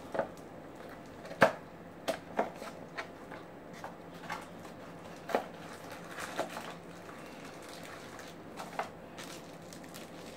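A small cardboard box and its plastic packaging being opened and handled by hand: scattered clicks, taps and crinkles, the sharpest about a second and a half in.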